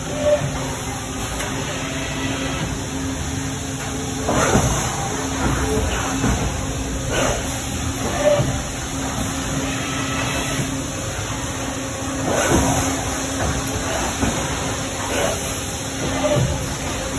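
Steady machine hum in an injection molding shop, around a Milacron Roboshot injection molding machine, with several short hissing, clattering bursts a few seconds apart and indistinct background voices.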